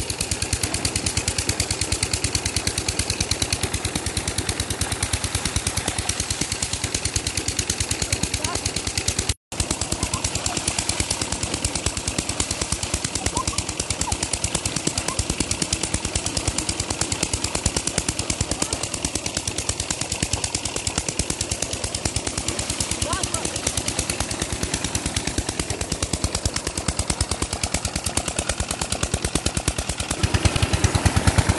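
Single-cylinder diesel 'Peter' engine driving a tubewell pump, chugging in a rapid, even beat, with water gushing from the outlet pipe into a pool. The sound cuts out for an instant about nine seconds in.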